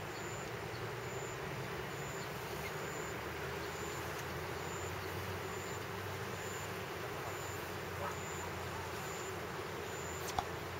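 Steady outdoor background noise: a faint, even hum of distant road traffic.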